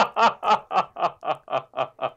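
A man laughing, a long run of short rhythmic ha-ha pulses about four a second, slowly fading.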